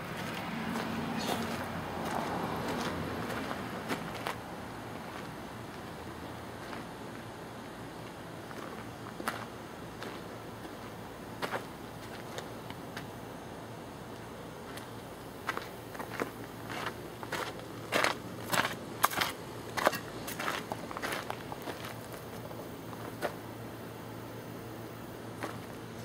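Footsteps crunching on a gravel driveway: a few scattered steps, then a quick run of steps in the second half, over a faint steady low hum.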